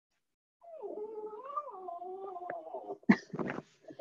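A pet dog whining in one long, wavering whine, complaining for attention, followed by a couple of short clicks near the end.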